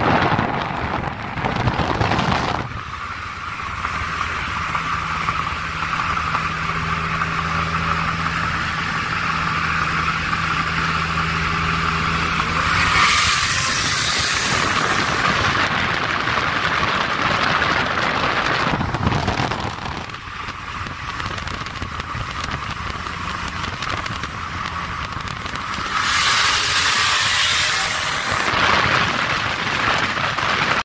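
Road and wind noise of a car at highway speed, heard from inside the car, with a steady low engine drone for the first dozen seconds. Wind noise rushes louder twice, about halfway through and near the end.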